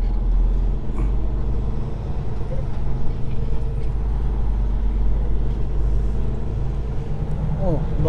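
A semi-truck's diesel engine runs steadily at low speed, heard from inside the cab as a constant low hum.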